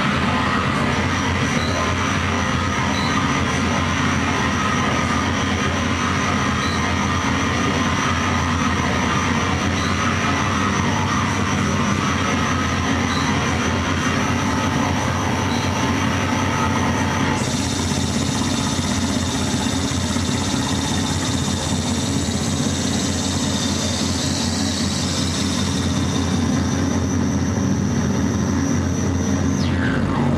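Live harsh noise music from electronic gear: a loud, unbroken wall of noise over a low drone, with a thin high whistle held above it. The upper texture changes suddenly a little over halfway through.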